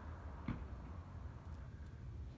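Steady low room hum with a single short, sharp click about half a second in.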